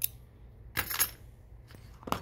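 Small loose metal sewing-machine parts clinking as they are handled: a single click at the start, then a brief cluster of light metallic clinks about a second in.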